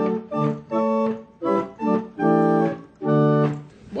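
18th-century single-keyboard chamber organ playing a short phrase of held chords with brief breaks between them, its two stops, the flute stop and the metal principal, drawn together.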